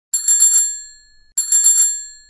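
A bicycle bell rung twice, each time a quick trill of several rapid strikes that rings on and fades away; the second ring comes about a second and a half in.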